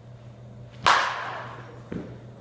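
A baseball bat striking a pitched ball: one sharp, loud crack about a second in that rings on and fades over the next second, followed by a smaller knock near the end.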